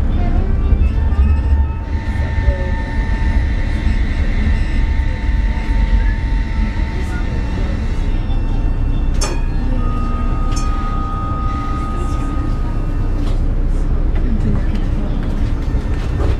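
Tram running slowly, heard from its front cab: a steady low rumble with a thin, steady whine that comes and goes, under the voices of a crowd. One sharp click about nine seconds in.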